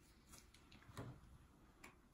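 Near silence with three faint clicks, the loudest about a second in: handling noise of a flat iron and hair as a lock is sectioned and clamped.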